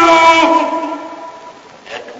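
A man's voice holding out a drawn word that slides down in pitch and fades away over about a second and a half, with a faint click near the end.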